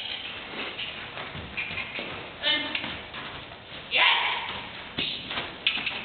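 A horse walking on the soft dirt footing of an indoor arena: dull, scattered hoof thuds and taps, with brief snatches of voices and a loud breathy rush about four seconds in.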